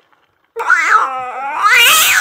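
A cat yowl: one long, wavering call starting about half a second in, loud and climbing in pitch toward the end.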